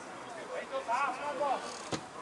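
Faint, distant shouting voices of players calling out on a football pitch, with a single sharp knock near the end.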